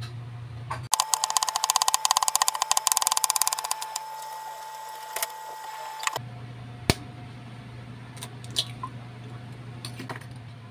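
Kitchen knife slicing bitter gourd on a wooden chopping board: a rapid run of knife strokes, many a second, from about one second in until about six seconds in, over a steady high hum. After that come a few single knocks.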